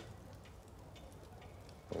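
Quiet room tone with a faint, steady hiss and a few light crackles from a wood fire burning in a fireplace.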